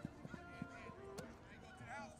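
Faint outdoor sports-field ambience: distant voices of players and coaches, with a few short sharp knocks in the first second and another just after the middle.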